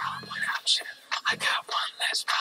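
Whispered male vocal hook of a pop song playing back through a speaker, over a sparse beat with a low bass note at the start.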